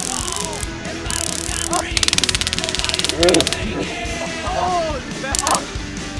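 Handheld stun guns crackling in rapid trains of sparks, several short bursts and one lasting about a second near the middle, with a man yelping between them.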